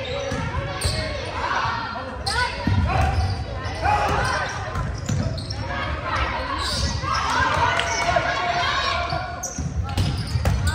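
Volleyball rally in an echoing gymnasium: a few sharp hits of the ball against hands and floor, the clearest about two, four and nine and a half seconds in, among players' shouts and calls.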